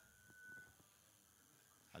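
Near silence: room tone, with a faint thin steady high tone during the first second.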